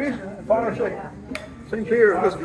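Men's voices in conversation around a restaurant table, with one sharp click about halfway through.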